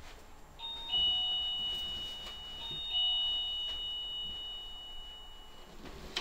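A doorbell chime rung twice, each time a two-note ding-dong falling from a higher note to a lower one, the notes ringing on and slowly dying away.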